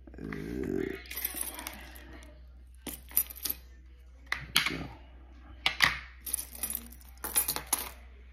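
Handling noise, then clusters of sharp light clicks and clinks as a small plastic key fob and its tiny screw are handled on a granite countertop, roughly once a second.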